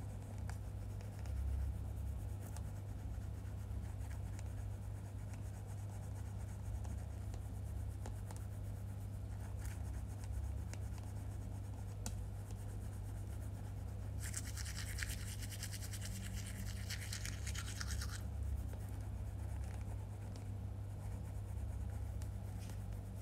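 Manual toothbrush scrubbing teeth: quiet brushing strokes, then about four seconds of fast, vigorous scrubbing past the middle, the loudest part. A steady low hum runs underneath.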